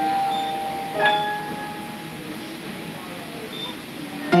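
Upright piano in a pause between pieces: a held chord dies away, a single note or small chord is struck about a second in and fades, and a faint high note sounds near the end, over a steady murmur of voices.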